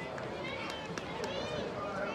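Footballers shouting and calling to each other across an indoor football pitch, several short calls rising and falling in pitch, with a few sharp knocks among them.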